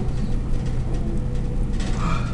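A steady low background hum with faint hiss, flat in level, and a faint steady tone for about a second in the middle.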